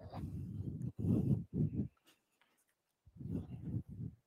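Deep breaths blowing across a close microphone as low, rough rushes of air: a long one at the start, two short ones a second in, and another long one near the end.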